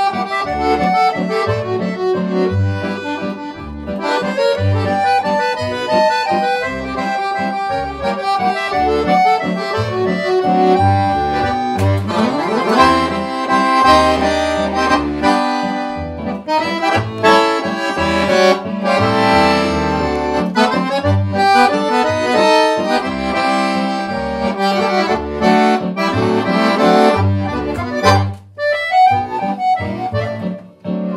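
Piano accordion playing a tune: a right-hand melody over regular left-hand bass notes and chords. A quick rising run comes about twelve seconds in, and there is a brief break near the end.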